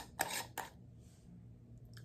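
A few light clicks and taps in the first second as a glass jar candle is handled and its lid taken off, then a faint, short sniff.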